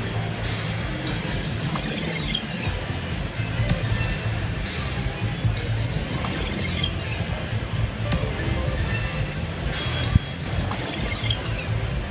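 An Entourage video slot machine playing its picking-bonus music, with several short falling-pitch sound effects as icons are picked and the multiplier and win meter count up. Underneath runs a steady casino-floor background.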